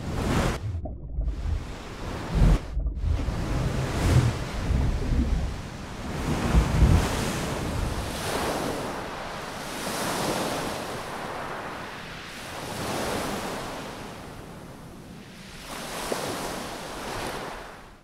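Ocean surf sound effects layered into a designed soundtrack: waves breaking and washing in, with heavy low surges in the first seven seconds. Then slower swells of rushing surf rise and fall every few seconds and fade out at the end.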